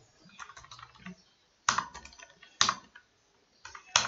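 Computer keyboard typing: quick runs of key clicks, with a few louder single keystrokes and a short pause a little before the end.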